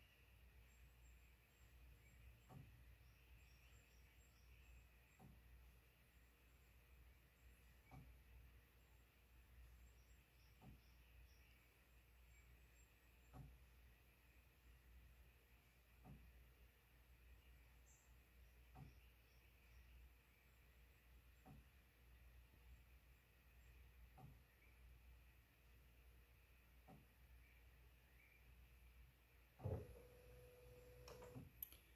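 Near silence while a Dymo DiscPainter inkjet disc printer prints a CD on its high-quality setting: only a faint tick about every two and a half seconds, with a louder click near the end as the print finishes.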